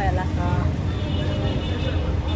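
Steady low rumble of a bus on the move, heard from inside, with voices faintly over it.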